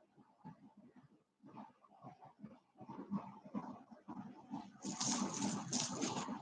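Beaded necklaces and a metal chain clattering as they are handled, a run of small irregular clicks that grows louder and denser toward the end.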